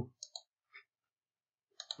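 A few faint, short computer mouse clicks, spaced out, with silence between them.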